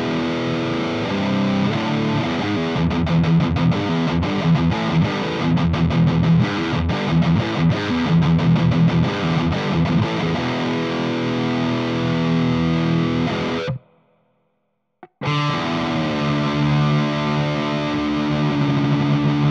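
Electric guitar played with distortion through a Blackstar ID:Core Stereo 150 modelling combo amp. The playing stops dead about fourteen seconds in, and a little over a second later the guitar comes back with sustained, ringing notes.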